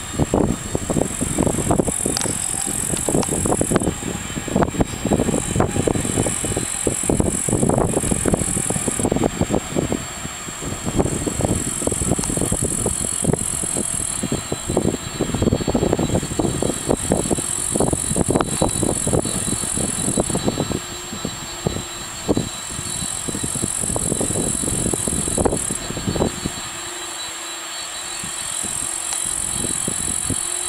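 Wind buffeting the microphone in uneven gusts, over the faint steady hum of a distant airliner's jet engines at low power; the buffeting eases about four seconds before the end, leaving the steady engine tone.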